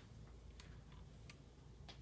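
Near silence: room tone with three faint, sharp clicks about two-thirds of a second apart.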